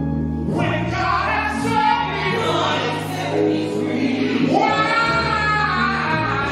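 Gospel praise team of men and women singing in harmony into microphones, with held low notes of instrumental backing underneath.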